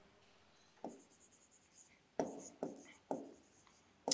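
Pen writing on the screen of an interactive display board: four short strokes and taps of the pen tip, the first about a second in, faint.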